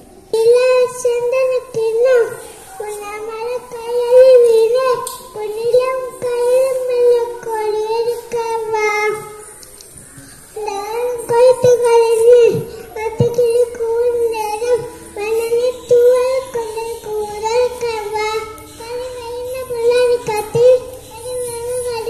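A young boy singing a song into a handheld microphone, one voice holding steady sung notes, with a short break near the middle.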